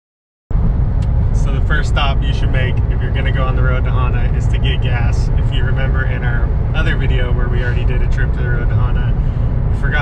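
Steady low rumble of road and engine noise inside a moving car's cabin, starting suddenly about half a second in, under a man's talking.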